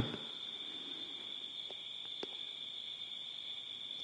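Faint steady high-pitched chirring of night insects in the background, with two faint clicks about halfway through.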